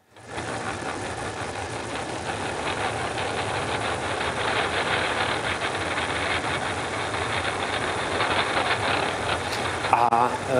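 Audio playback of the demodulated phase disturbance on the 306 km optical fibre link from Brno to Prague: a dense, steady rushing noise with a low rumble that grows slightly louder and cuts off at the end. It is the fibre picking up vibration, apparently from a metro train crossing one of the bridges the cable runs over in Prague.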